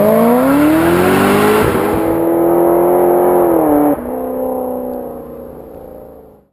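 Race car engine sound effect revving up: the pitch rises for about two seconds and holds, drops sharply about four seconds in, then fades out near the end.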